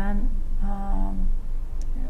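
A person's drawn-out hesitation sound between words, held on one steady pitch for under a second.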